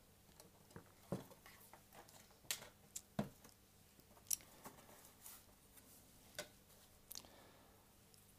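Paper and a plastic set square being handled and laid on a tabletop: a scattered series of short, light clicks and taps with faint rustling.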